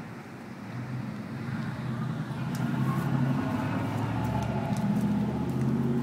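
A motor vehicle's engine running, its hum growing louder from about two seconds in, with a few faint clicks over it.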